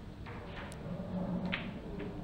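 A pool shot: the cue strikes the cue ball, then balls collide on the table with a couple of faint, sharp clicks.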